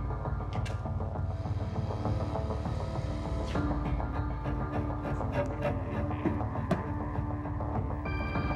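Tense, dark background score music with deep low sustained tones and a few sharp percussive hits.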